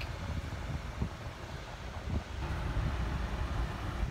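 Low rumbling noise with a few soft knocks, typical of a phone microphone being handled and moved about.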